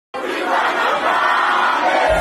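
A crowd of many voices shouting and cheering together in a steady, dense wall of sound.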